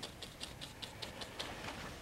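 Paintbrush working dark oil paint onto the canvas in quick, short, scratchy strokes, about four or five a second, soft and faint.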